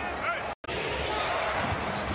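Crowd noise and court sounds in a basketball arena, a steady haze of sound. It drops out completely for a split second about half a second in, at a splice between two game clips.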